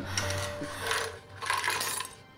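Shards of broken glass clinking and scraping on a tile floor as a wooden box is picked up from among them, in three short bursts, over soft background music.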